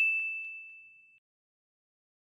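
A single high-pitched ding sound effect, one clear ringing tone that fades out over about a second.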